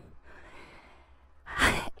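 A quiet pause, then a short audible breath about a second and a half in, just before speech resumes.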